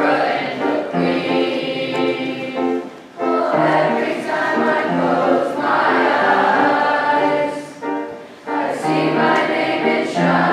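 A school choir of children's mixed voices singing together, with two brief breaks between phrases, about three seconds in and again about eight seconds in.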